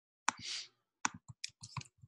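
Computer keyboard and mouse clicks: an irregular run of sharp clicks, with a brief rustle near the start.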